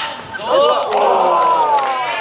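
Several voices shouting at once during play in front of the goal, starting about half a second in, with one long drawn-out shout that falls in pitch.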